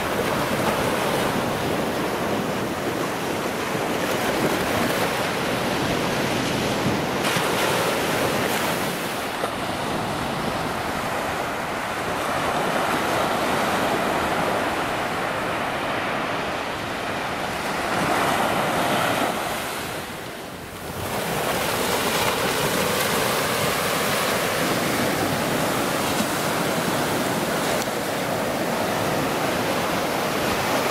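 Small ocean waves breaking and washing up a sandy beach: a steady rush of surf. The sound briefly drops away about two-thirds of the way through, then returns.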